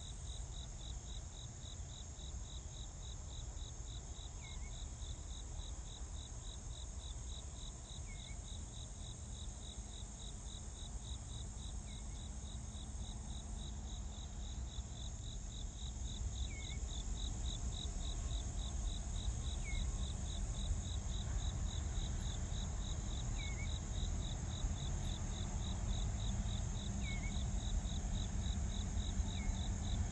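Crickets chirping in a fast, even rhythm over a steady high insect hiss. A low rumble from a distant train grows louder over the second half as the train approaches.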